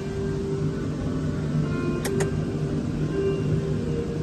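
Steady indoor hum with faint background music, and two short clicks about two seconds in.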